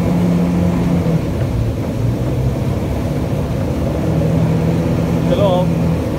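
Motorboat engine running steadily with rushing water and wind noise; its hum drops a little in pitch between about one and four seconds in, then comes back up.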